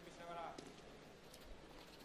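Faint arena background hum, with one brief, distant raised voice about a quarter of a second in.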